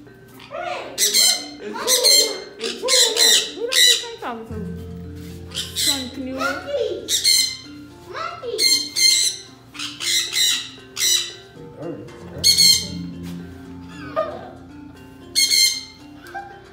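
Sun conures screeching: loud, shrill squawks in quick clusters, one to two a second, with short pauses between bursts. Background music plays underneath.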